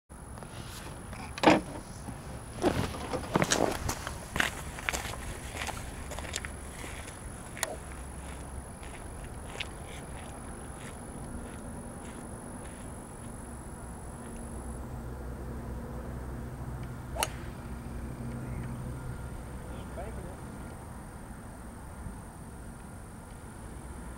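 A single sharp click of a golf club driving the ball off the tee, about two-thirds of the way through. The first few seconds hold a cluster of louder knocks and clicks, and a low steady hum runs through the middle.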